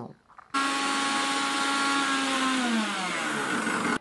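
Electric mixer grinder with a steel jar running, grinding chopped bananas into rice batter. It starts abruptly about half a second in with a steady whine, and its pitch drops in the last second or so.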